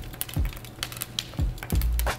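Wired plastic earbuds and their inline mic clicking and rattling against each other in rapid, irregular clicks as the tangled cord is shaken. Deep bass thumps from a background music beat run underneath.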